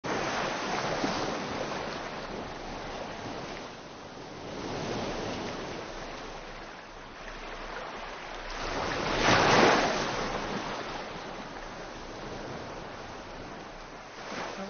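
Ocean surf washing onto a shore, rising and falling in several swells, with the loudest wave breaking about nine seconds in.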